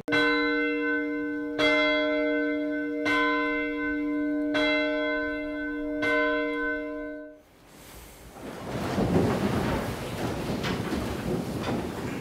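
A single church bell tolling: five strikes about a second and a half apart, each ringing on, cut off abruptly about seven seconds in. After that comes a steady background hiss and rustle.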